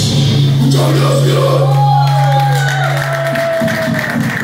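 A live metal band's final chord ringing out: a low note from the guitars and bass held for about three seconds, then cut off, with a long high tone sliding slightly downward over it and the crowd cheering.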